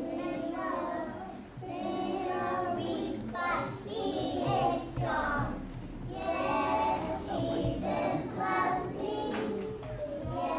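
A group of young children singing a song together.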